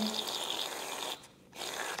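Barbasol aerosol shaving cream can dispensing foam into a bowl: a steady hiss from the nozzle that stops a little over a second in.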